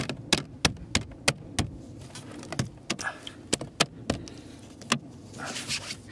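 Plastic speaker cover being pressed and knocked into a car's rear interior trim panel as its clips snap in: a run of sharp clicks, about three a second at first, then more spaced out.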